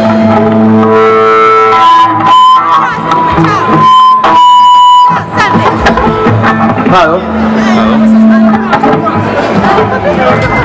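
Amplified electric guitar noodling: a run of held notes, with a high note sustained for about a second near the middle, over crowd voices.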